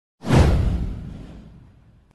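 A whoosh sound effect with a deep low boom under it, hitting suddenly a fraction of a second in, sweeping down in pitch and fading out over about a second and a half.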